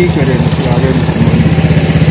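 A small engine idling steadily with a rapid, even beat, under men's voices.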